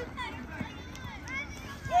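Shouting voices of coaches and players on an outdoor football pitch, faint and scattered, with a louder shout starting at the very end.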